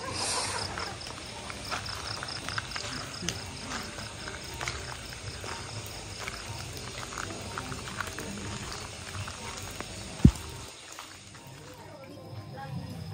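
Outdoor night ambience: distant voices and a steady high, evenly pulsing chirr, with scattered small clicks. One sharp low thump comes about ten seconds in, and after it the sound drops quieter.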